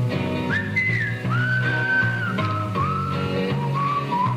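Country song in an instrumental break: a whistled melody, starting about half a second in, sliding between held notes over strummed guitar and a walking bass.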